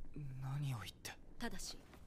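Quiet, soft speech from a single voice, its pitch falling through the first second, followed by a few faint syllables.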